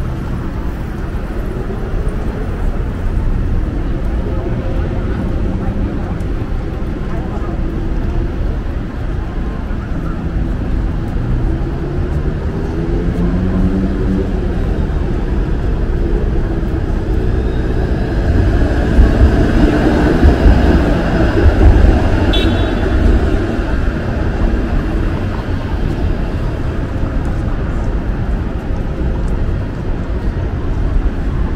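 Downtown street ambience at a busy intersection: steady traffic rumble with vehicles passing and indistinct voices of passers-by. One vehicle gets louder about two-thirds of the way through, its engine rising in pitch as it passes.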